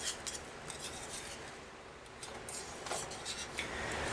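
Wire whisk scraping and clicking faintly against an Erie cast iron skillet as thick mushroom gravy is stirred. It is softest about halfway through.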